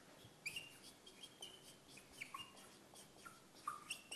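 Marker squeaking faintly on a whiteboard as words are written: a string of short, high squeaks about two a second, some sliding down in pitch.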